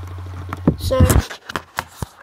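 A man's voice saying a word over a steady low hum that cuts off abruptly just past a second in, with a few sharp knocks near the end.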